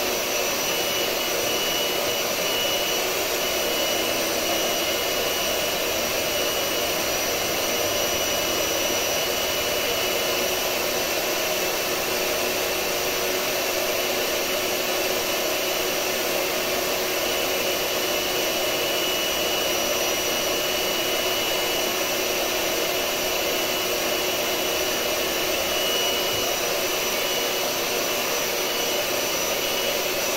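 Electric hand mixer running steadily at one speed with an even motor whine, its beaters whipping eggs in a glass bowl as the mixture foams up.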